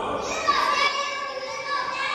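Young children's voices calling out and chattering together in a classroom game, several voices overlapping.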